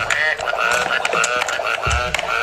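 High-pitched, breathless laughter in a rapid run of short bursts, about five a second.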